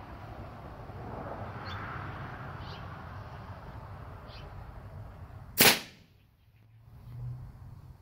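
Custom .45 calibre big-bore dump-valve air rifle firing a single shot about five and a half seconds in: one sharp crack that dies away within a fraction of a second, from a chamber charged to about 1,200 psi. Before it, a steady low hiss.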